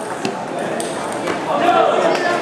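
Table tennis rally: a celluloid ball clicking sharply off the paddles and table, a few hits about half a second apart.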